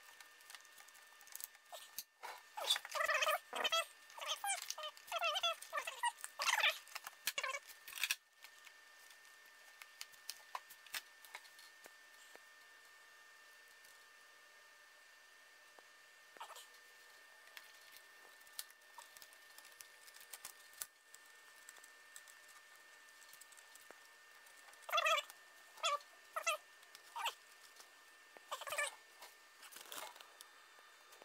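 A dog making short, high-pitched vocal sounds in bursts: a long run of them a couple of seconds in and a few more near the end.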